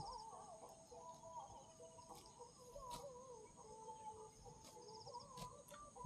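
Near silence: faint, wavering distant calls over a steady thin high insect hum, with a few soft clicks.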